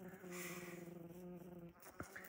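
Honeybee buzzing at the hive's lower entrance: a faint, steady hum that stops near the end.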